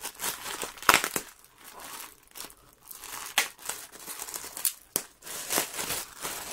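Clear plastic clothing bag crinkling as it is handled, in irregular crackles, the sharpest about a second in and again about three and a half seconds in.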